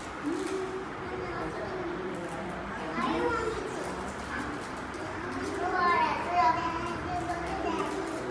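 Young children talking indistinctly, several small voices overlapping, with one voice rising louder and higher about three-quarters of the way through.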